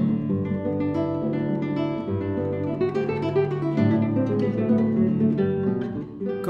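Acoustic guitars playing chords in a strummed pattern.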